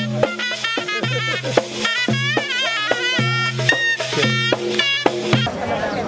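Folk music played live on a pipe and hand-beaten frame drums: the pipe carries a wavering, ornamented melody over a steady beat of drum strikes. The music breaks off about five and a half seconds in.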